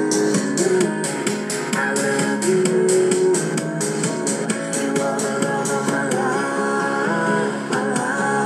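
Groov-E CD player playing a pop song through its built-in speaker: an instrumental stretch with guitar over a steady beat, the beat thinning out about six seconds in.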